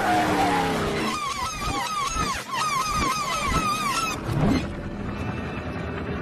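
Race car engine and tyre squeal played backwards. The engine pitch falls in the first second, then a run of repeated arching squeals comes about three a second, and a short rising engine note follows about four and a half seconds in.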